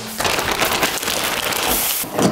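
Plastic packaging rustling and crinkling in quick, dense crackles as an air fryer is pulled out of its wrapping bag.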